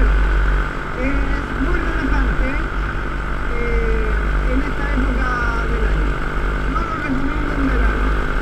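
A paratrike's paramotor engine runs steadily in flight, at an even pitch, with heavy wind rumble on the microphone.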